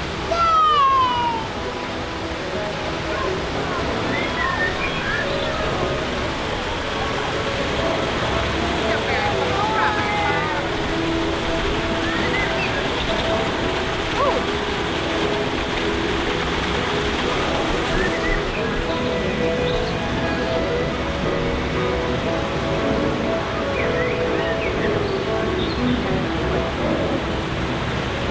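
Background music with held, steady notes over a constant rush of water and low passenger chatter. A short falling tone sounds about a second in.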